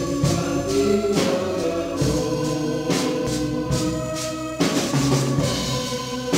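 Live religious song from a small church band: voices singing through microphones over a drum kit and electric bass, with drum and cymbal hits about once a second.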